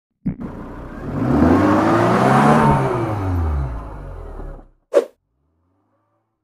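Car engine sound effect in an intro, its pitch rising and then falling as it swells and fades, like a fast pass-by. A short sharp hit follows about five seconds in.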